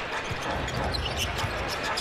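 Basketball arena sound during live play: a steady crowd hum with a few short squeaks and ball bounces from the players on the hardwood court.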